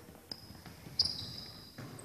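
Basketball sneakers squeaking on a hardwood gym floor, with light knocks of ball and feet, as players shift on defence. There are a few short sharp squeaks, the loudest about a second in, each trailing off in the hall's echo.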